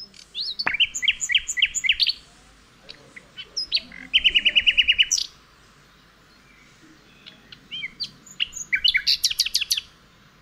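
Recorded birdsong played back: bursts of quick high chirps and trills. One fast, even trill runs about a second mid-way, then there is a lull with a few scattered chirps before another burst near the end.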